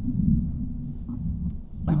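Handling noise from a table microphone on a stand being moved: a low rumble with a sharp click about a second and a half in.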